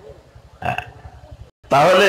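A pause in a man's sermon speech, broken by one short throaty vocal sound about half a second in; he resumes speaking near the end.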